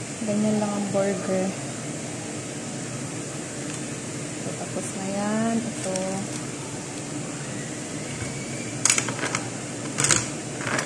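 Steady room hum, with a voice briefly at the start and again about five seconds in, and a quick cluster of clicks near the end.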